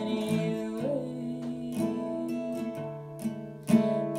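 Steel-string acoustic guitar played in a slow folk song, notes left ringing, with one sharp, loud strum near the end.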